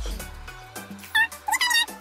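Background music with a deep bass fades out in the first half second. A pet then gives a few short, high-pitched, wavering whimpering cries, about a second in and again near the end.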